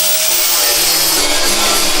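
Angle grinder running at speed, its abrasive disc grinding into steel sheet metal to cut through factory spot welds that hold a bracket to the car's floor pan. It is a steady, loud grinding hiss.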